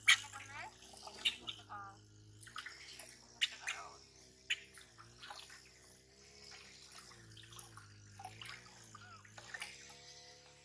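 Water splashing in a steel basin as a baby macaque is washed, with a few sharp splashes standing out. The infant monkey gives high, squealing cries in the first couple of seconds.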